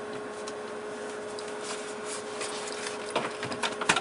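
Small clicks and knocks of objects being handled and set down on a desk, loudest about three seconds in and again just before the end, over a steady faint tone.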